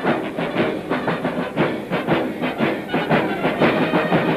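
A marching military drum corps, snare and bass drums beating a steady, dense march cadence with several strokes a second. It is heard through an old, hissy 1940s film soundtrack.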